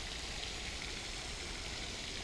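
Steady hiss of water falling and pattering onto a pond surface.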